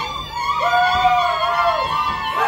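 High voices in a traditional Lugbara dance song holding a long call. It begins about half a second in and falls away near the end, with further voices held above it.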